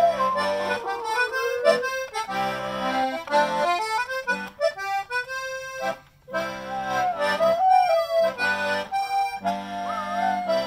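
Button accordion playing a brisk hornpipe tune. A golden retriever howls along in long sliding notes at the start, again about seven seconds in, and near the end.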